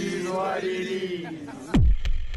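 A single voice draws out one long vocal note that slowly sinks in pitch. Near the end it is cut off by a sudden loud, deep boom that drops into a low rumble.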